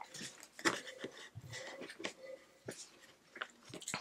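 Faint sipping through a drinking straw from a tumbler, with scattered soft clicks and small handling noises.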